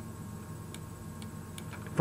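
A few faint, irregularly spaced ticks of a stylus tapping on a pen tablet while writing, over a low steady hum.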